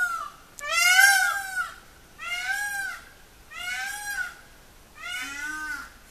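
An animal calling four times, each a drawn-out, rising-then-falling call under a second long, about one and a half seconds apart.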